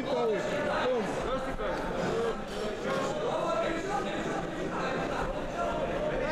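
Men's voices calling out in a large hall, one shouting "Kom!", with crowd chatter behind.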